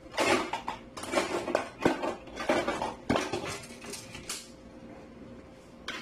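A utensil clattering and scraping against a large cooking pot in a run of irregular strokes that stops about four and a half seconds in.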